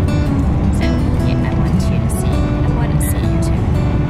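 Pop music with a steady beat and held synth notes, over the constant low road noise of a car's interior.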